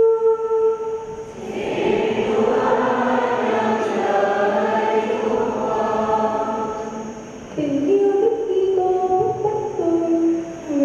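A church congregation singing a hymn together. A single voice holds a note at the start, many voices sing together through the middle, and a single voice leads again near the end.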